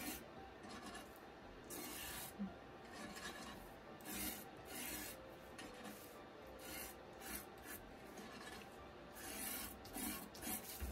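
Stiff-bristled splatter brush scraping across cardstock in short, irregular strokes, a faint dry scratching as the wet bristles drag ink into wood-grain streaks.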